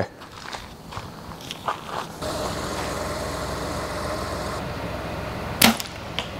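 Faint footsteps on leaf-covered gravel, then a steady outdoor hiss, and a single sharp arrow shot at a 3D deer archery target near the end.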